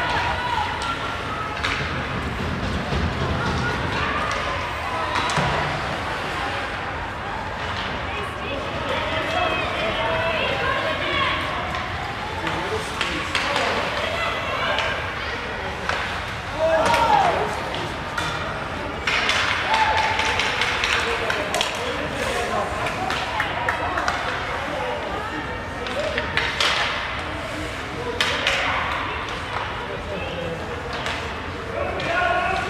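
Ice hockey rink ambience: background voices of spectators with occasional shouts, and scattered sharp clacks of sticks and puck striking the ice and boards.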